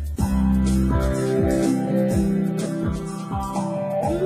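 Instrumental passage of a band song: electric guitar and keyboard over a steady drum beat and bass. The music drops out for a moment right at the start, then comes back in.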